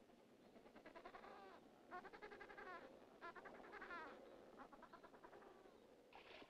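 Adélie penguins calling in a rookery: about four faint bouts of harsh, pulsing squawks, one after another.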